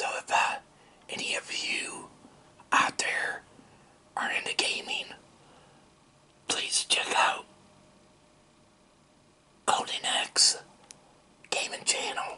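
Whispered speech in short phrases, about seven of them, with quiet pauses between.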